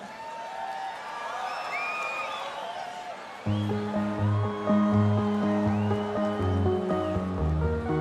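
Festival crowd cheering and whistling, then about three and a half seconds in an electronic song starts with a pulsing synth bass line and held chords.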